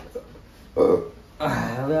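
One short, loud vocal sound from a man about a second in, then his speech.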